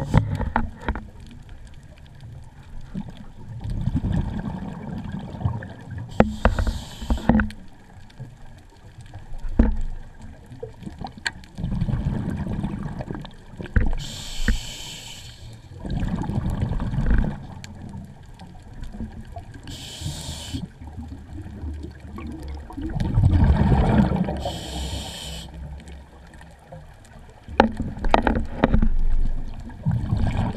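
Scuba diver breathing through a regulator: a short hissing inhalation every five or six seconds, each followed by a longer low bubbling rumble of exhaled air.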